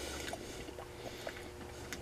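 Faint chewing of a soft black garlic clove: scattered small wet mouth clicks over a faint steady hum.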